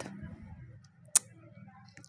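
A metal spoon knocking once against the side of a steel cooking pot while cooked biryani rice is stirred: a single sharp click about a second in, over faint low stirring noise.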